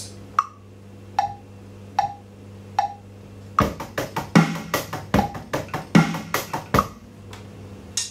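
A click track ticks at 75 beats a minute, four clicks, then a groove on an electronic drum kit starts about three and a half seconds in: sixteenth notes alternating right-left on the sticks, with kick and snare on the beats. It lasts about one bar and stops near the end.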